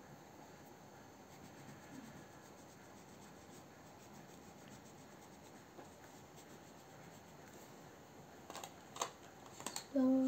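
Faint scratching of a wax crayon colouring on paper, then a few light clicks and knocks near the end.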